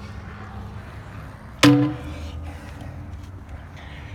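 A steel trailer ball coupler set down on the smoker's steel expanded-metal grate: one sharp metallic clank a little over a second and a half in, with a tone ringing on for about two seconds over a low steady background rumble.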